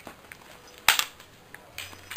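One sharp slap of a hand striking about a second in, with a fainter smack near the end.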